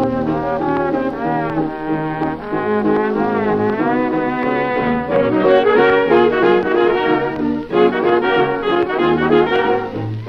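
Late-1920s dance orchestra playing an instrumental passage with brass to the fore, notes bending in pitch in the first few seconds before the full band grows busier and louder about halfway through. The thin, top-cut sound is that of a 1929 recording.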